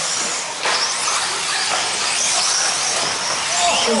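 Electric 4WD RC buggies racing on a dirt track: high-pitched motor and drivetrain whine that rises and falls as the cars accelerate and brake, over a steady rush of noise.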